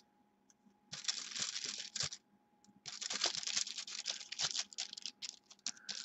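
Paintbrush scrubbing and mixing acrylic paint on an aluminium-foil-covered palette: a scratchy, crinkly rustle. It comes in two spells, a short one about a second in and a longer one from about three seconds in until near the end.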